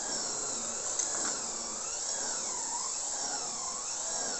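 Taiwan-made wood spindle machine running steadily under its electric motor: a continuous whir with a faint whine that rises and falls about once a second. It is running normally, with no fault after its repair.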